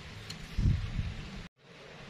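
A person chewing a mouthful of tender stir-fried beef close to the microphone: a few low, muffled sounds about half a second and a second in, cut off abruptly near the end.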